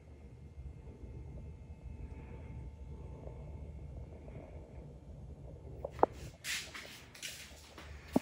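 Low rumble of a handheld camera being carried. About six seconds in comes a sharp click, followed by a few short scraping, rustling noises.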